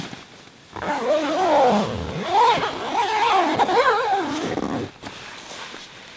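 A loud, wavering animal-like howl lasting about four seconds, its pitch rising and falling over and over before it breaks off near the end.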